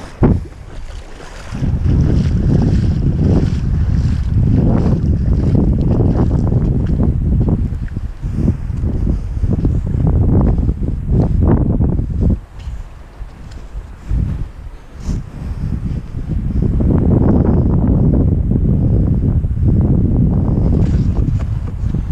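Wind buffeting the microphone in heavy gusts, a loud low rumble that eases for a few seconds past the middle and then picks up again.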